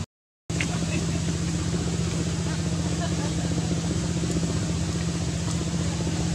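Half a second of silence at an edit cut, then steady outdoor background noise with a constant low hum.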